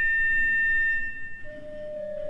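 Pipe organ playing steady held notes. A high chord dies away about a second in, and a lower note comes in about half a second later.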